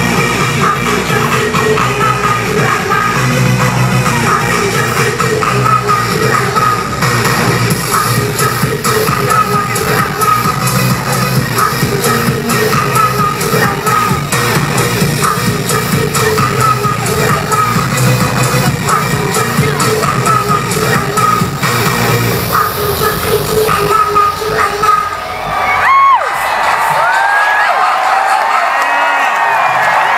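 Loud live electronic rap-rave music over a large festival sound system, with the crowd cheering along. About 26 seconds in the music cuts out and the crowd cheers, screams and whistles.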